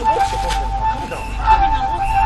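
Background film music holding one steady flute-like note that swells and fades a few times a second. Under it, people's voices cry out without clear words.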